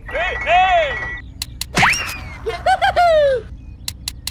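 Cartoon sound effects for a stop-motion character: short, squeaky, voice-like gibberish calls in several rising-and-falling phrases. About two seconds in there is a quick swooping glide that dips low and shoots up high, and a few sharp clicks.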